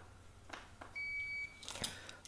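A Kelvatek Fusemate low-voltage fault-finding unit gives a single steady electronic beep, lasting under a second, as it is switched on, after a couple of faint clicks.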